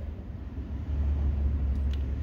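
Low, steady rumble of a vehicle engine heard inside a parked car's cabin, growing louder about a second in.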